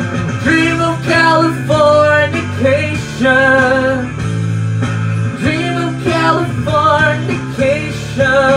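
A man singing a string of short phrases into a handheld microphone over a rock backing track with guitar.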